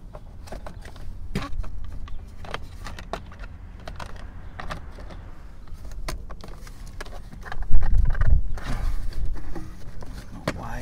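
Plastic steering column cover being fitted back into place by hand, with scattered clicks and knocks of plastic against plastic. About eight seconds in there is a louder low thudding as the cover is pressed home.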